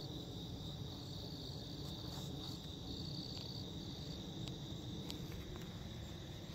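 A chorus of crickets trilling steadily, high-pitched, with a second trill that starts and stops every second or so, over a low background rumble.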